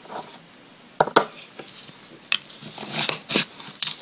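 Nail stamping tools worked on a metal stamping plate: two sharp clicks about a second in, then short high scraping sounds as polish is scraped across the plate, and a last click near the end.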